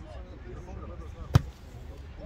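A football kicked hard once: a single sharp thud a little over a second in.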